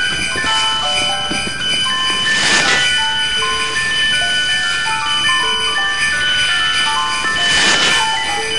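Lo-fi sound collage of circuit-bent electronic Christmas-toy melodies: many overlapping beeping notes at different pitches, layered into a chiming jingle. Washes of hiss swell about two and a half seconds in and again near the end.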